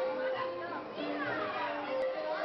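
Carousel music, a melody of steady held notes, playing over the chatter and calls of children on the ride.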